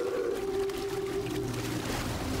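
Film soundtrack: a single long, steady low tone held for over a second and fading near the end, over a low rumble.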